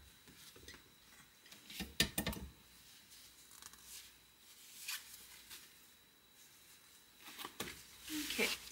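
Tabletop hand press setting metal eyelets in corset fabric: a few sharp clicks and clunks, the loudest cluster about two seconds in, with soft fabric rustling between strokes.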